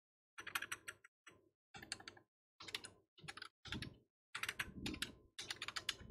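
Faint typing on a computer keyboard: several short runs of key clicks with brief pauses between them.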